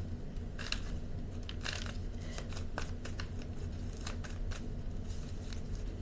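A deck of tarot cards being shuffled by hand: quick, irregular clicks and slaps of the cards over a steady low hum.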